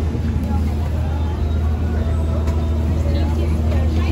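Background chatter of a crowd over a steady low rumble.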